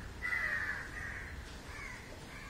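A bird calling: one long call lasting over a second, then a short call near the end.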